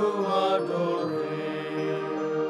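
Chanted singing of a devotional refrain, the voice moving through a phrase and then settling on a long held note about a second in.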